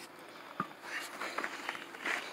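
Faint clicks and one soft knock, a little over half a second in, from a small bench vise and a copper tube being handled while the tube is flattened in its jaws.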